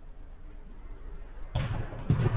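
Steady low background noise, broken about one and a half seconds in by a sudden loud thud that carries on into a louder jumble of sound.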